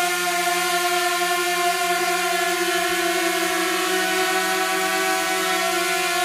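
DJI Mini 2 quadcopter hovering with propeller guards fitted: its four propellers give a steady buzzing whine that holds an even pitch throughout.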